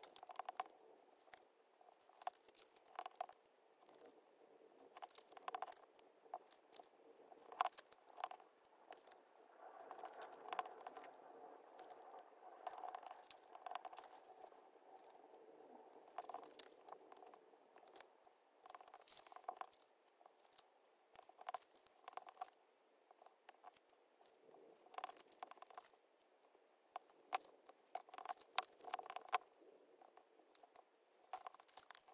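Paper being handled, folded and creased by hand on a cutting mat: faint rustling and scraping with frequent light taps and clicks.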